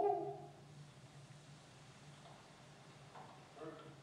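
A field recording of a short voice-like call, which the presenter attributes to a Sasquatch, played back through lecture-hall speakers: one loud hooting call at the start, then fainter vocal sounds about three seconds in, over a steady low hum.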